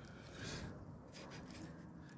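Faint scraping and a few light clicks as a small metal allen key picks at the old, squashed rubber O-ring in a car's thermostat housing groove.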